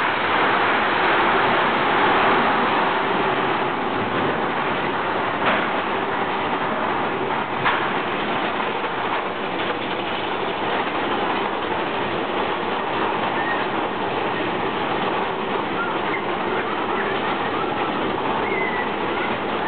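Big Thunder Mountain Railroad mine-train roller coaster running along its track, a steady, even noise of the cars and wheels with two sharp clacks about two seconds apart. Faint short high chirps come in over the running noise in the second half.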